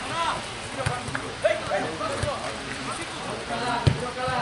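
Several voices calling out, with a few sharp knocks in between, the loudest near the end.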